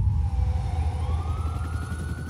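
A distant siren wailing in one slow glide, dipping and then rising, over a deep, steady rumble.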